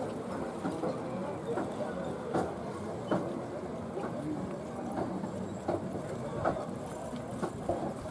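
A pair of horses trotting in harness, pulling a carriage: faint hoofbeats with occasional knocks from the carriage.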